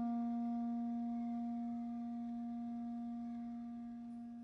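Clarinet holding one long low note that slowly fades.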